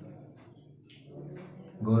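A steady high-pitched tone, unbroken through a pause in a man's speech.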